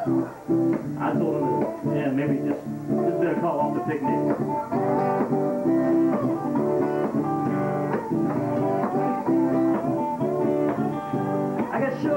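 Two guitars, led by an acoustic, strumming a steady chord pattern in an instrumental break of a folk talking-blues tune.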